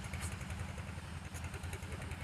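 A steady, low, finely pulsing drone of an engine running somewhere off, with no other sound standing out.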